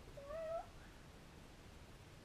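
A cat meowing: one short, wavering meow in the first half-second.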